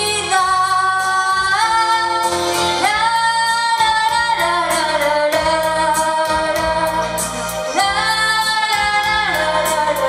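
A woman singing long held notes that glide up into each new pitch, over musical accompaniment with a steady beat.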